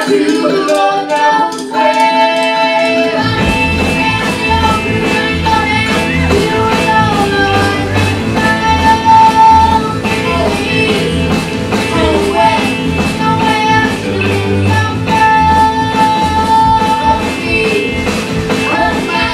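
A live band plays with a young girl singing lead over her ukulele, backed by electric guitar and a snare drum. The low end and a fast, steady drum beat come in about three seconds in.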